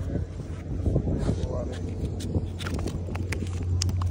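Indistinct voices over a steady low hum, followed by several short, sharp taps in the second half.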